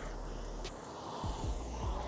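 Concept2 rowing machine's air flywheel spinning with a low, steady whir through a slow recovery stroke.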